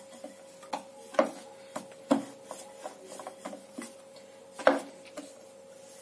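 Wooden rolling pin rolling out chapati dough on a rolling board: low rubbing as it rolls, broken by eight or nine sharp, irregular knocks and clacks as the pin and board bump.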